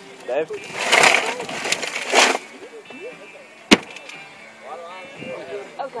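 A single sharp gunshot about two-thirds of the way through, among shouting and laughter.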